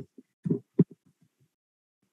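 A few short, faint fragments of a man's voice in the first second, then complete silence.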